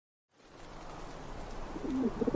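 A soft hiss of ambience fades in after a moment of silence, and a dove starts cooing near the end.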